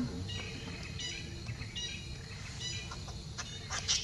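Infant macaque giving a series of short, high-pitched squeaks, breaking into louder, shriller cries near the end as an older juvenile pins it down.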